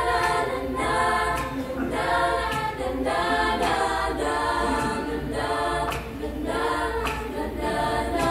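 Choir of girls and young women singing a cappella, in short phrases about a second apart.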